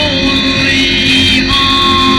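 A man singing long held notes into a microphone while strumming an amplified electric guitar.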